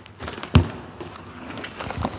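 Taped cardboard box being pulled open by hand: flaps and packing tape rustling and scraping, with one sharp crack about half a second in.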